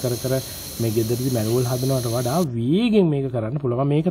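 A man talking in Sinhala over a steady high hiss from a laser cutter at work; the hiss stops suddenly about two and a half seconds in, leaving the voice alone.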